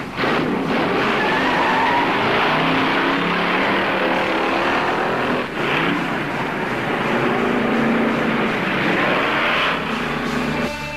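Hot rod roadster's engine running hard as the car accelerates down a street, its pitch rising and falling, with a short dip about halfway through.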